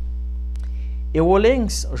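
Steady electrical mains hum, a loud low drone in the recording, heard on its own for about the first second; a man's voice starts speaking over it partway through.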